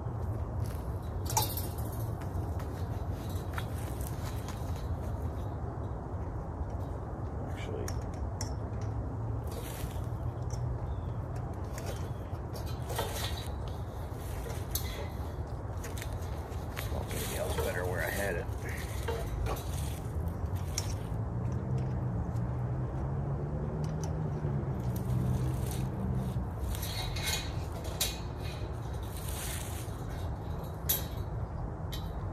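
Scattered metallic clinks and rattles as a steel garden stake is knocked and worked against a chain-link fence, over a steady low rumble.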